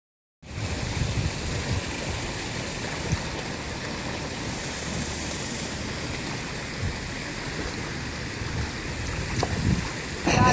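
Steady rush of water noise from a child kicking and stroking backstroke through a swimming pool.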